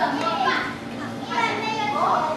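A group of young children's voices talking at once, with a woman's voice among them.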